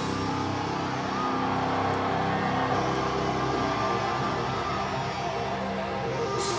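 Live heavy metal band: distorted electric guitars ringing on long, steady held notes at a constant loud level.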